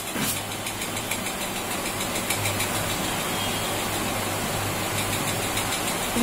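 A steady, unbroken low hum of a running machine over an even background noise.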